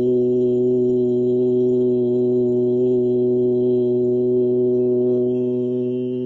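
A man chanting one long "Om", held steady on a single pitch and beginning to fade near the end.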